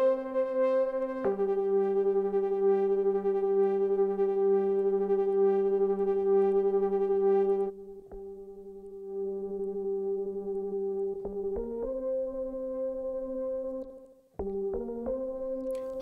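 Sustained synthesizer chords, each held for a few seconds before moving to the next, played back through a Sugar enhancer plugin. About halfway through, the sound turns thinner and quieter, losing its low notes for a few seconds. It then comes back fuller, with a brief gap near the end.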